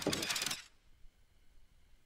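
Rapid metallic clicking and rattling of the mechanical piano-playing gloves springing out for about the first half second, then near silence.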